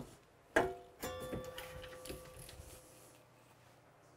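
Single-stage reloading press cycled to full-length size a lubed rifle case: a metal clank about half a second in, then a sharper metallic strike that rings with a clear tone and fades over about two seconds.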